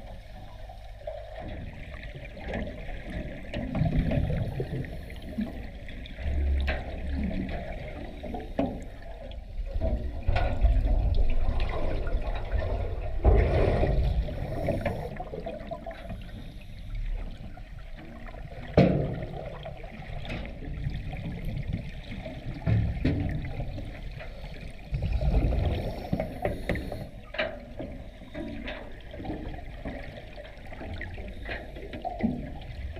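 Muffled underwater sound picked up by a camera in its waterproof housing: water surging and gurgling in uneven swells, with a couple of sharp knocks, near the middle and about two-thirds of the way through.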